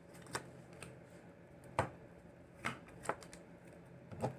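Tarot cards being handled and drawn from the deck: a handful of light, separate card clicks and snaps, the sharpest about two seconds in, over a faint steady low hum.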